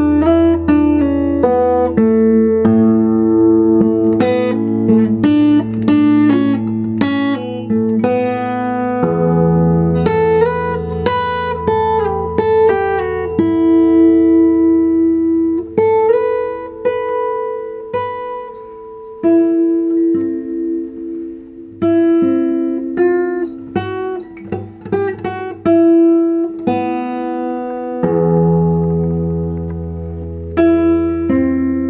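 Acoustic guitar played solo, single notes and chords picked one after another. Some notes are left to ring out between phrases.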